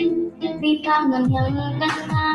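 A child singing over a band backing with a drum kit; a few drum hits with quickly falling pitch come in the second half.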